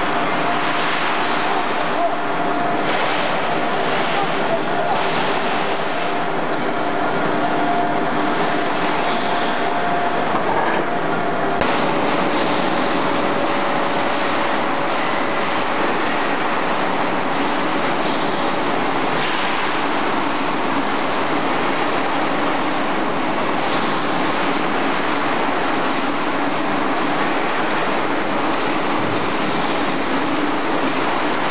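Pipe-opening machine running: its rollers and gear train make a loud, steady mechanical noise with a few held tones. The sound changes abruptly about a third of the way in, as a flattened steel plate passes through the rollers.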